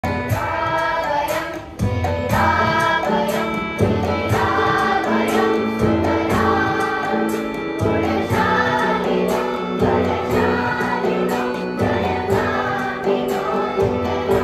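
A children's choir singing a song together in phrases of a second or two, with a strummed acoustic guitar accompanying.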